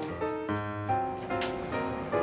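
Background music: a melody of short held notes, one after another.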